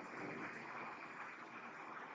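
Faint, steady scratching of a marker pen drawing lines on a whiteboard.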